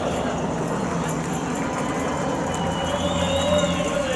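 Outdoor race-course ambience: a steady noisy background with indistinct distant voices.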